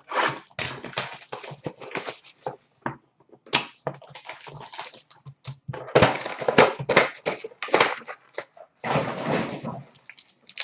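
Foil trading-card packs being handled and torn open by hand: irregular bursts of crinkling and rustling wrapper, with brief pauses.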